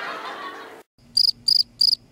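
A noisy stretch cuts off abruptly to dead silence just under a second in, and a cricket chirps in short, even, high pulses, about three a second, three chirps in all.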